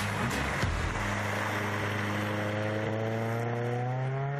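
Music with a beat that fades out in the first second, then a historic car's engine running with a steady note that slowly climbs in pitch as the car accelerates.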